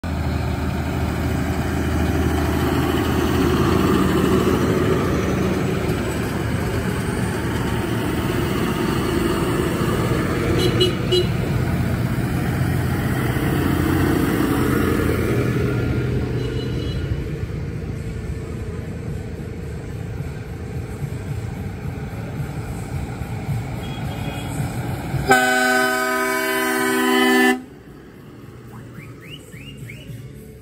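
Tractor diesel engines running as a convoy of tractors drives past close by, the rumble fading over the first half as they move away. Near the end a loud horn blast of about two seconds cuts off suddenly.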